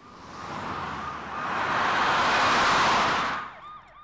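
A rush of noise that swells over about three seconds and fades out near the end.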